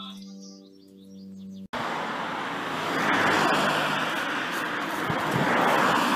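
Background music with held, steady notes that cuts off suddenly about a second and a half in. Then road traffic noise from passing cars, an even rushing that swells twice.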